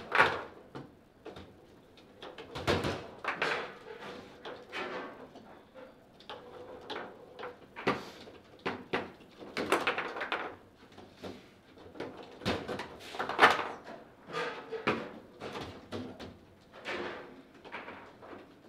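Table football (foosball) in play: the ball struck by the plastic figures and the rods worked by the players, giving a run of irregular sharp knocks and clacks with a few louder hits.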